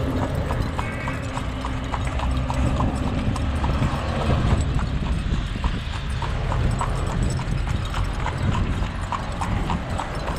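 A carriage horse's hooves clip-clopping steadily on an asphalt road, about three strikes a second, over a continuous low rumble.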